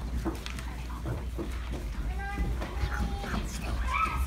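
Several children's voices in short, scattered calls and chatter, with footsteps and shuffling as a group moves about, over a steady low hum.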